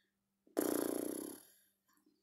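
A man's loud, rasping exhale from the throat, about a second long beginning half a second in. It is his reaction to the burn of a strong, spicy ginger cocktail he has just sipped.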